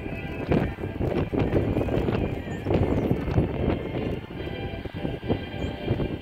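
A pony's hoofbeats, uneven low thuds on arena sand, about one or two a second, over faint background music.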